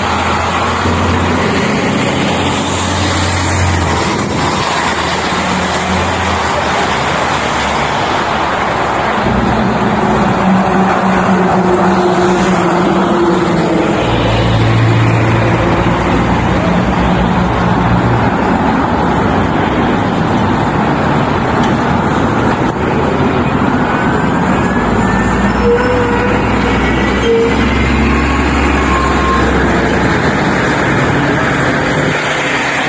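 Street traffic: cars and trucks passing with their engines running. A heavy engine hum comes up near the end as a city transit bus passes close by.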